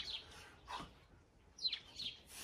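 A bird chirping faintly, two short calls that fall in pitch, about a second and a half apart.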